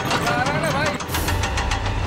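A man's wavering vocal cry, then from about a second in a steady low engine drone from the giant wheel's motor.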